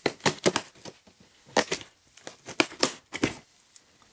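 Packing tape being pulled and torn off a cardboard shipping box, in several short bursts.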